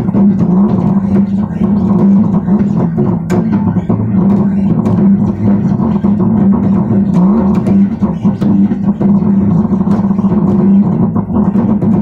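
Bass guitar being played: a continuous line of low notes with sharp string and fret clicks throughout.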